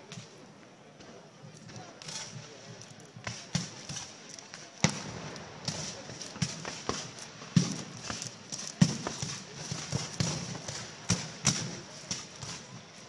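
Black-powder muskets firing blanks in a scattered, irregular popping, with the loudest reports about five and nine seconds in.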